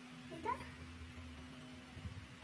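A single short, high call that rises in pitch, meow-like, about half a second in, over a faint steady hum.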